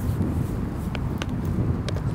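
Wind rumbling on the microphone, with a few sharp footfalls of a person running across concrete and up a skate ramp.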